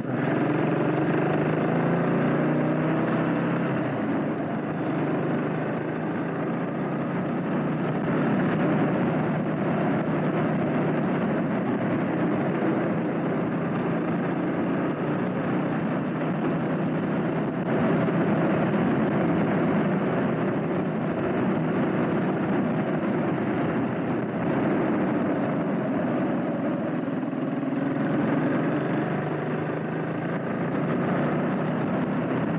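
Honda CB400SS air-cooled single-cylinder engine running as the motorcycle is ridden at steady speed, heard from the rider's position under a steady rush of wind and road noise. The engine note is most distinct in the first few seconds.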